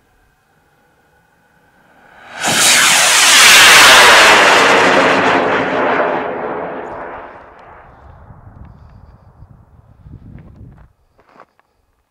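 Potassium nitrate and sugar solid-fuel rocket motor firing at liftoff: a sudden loud rushing hiss comes in about two seconds in, then fades over several seconds as the rocket climbs away.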